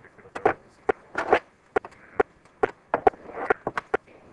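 A rapid, irregular series of sharp knocks and clicks, about fifteen in all.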